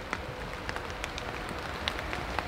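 Quiet woodland background noise with scattered light, irregular ticks.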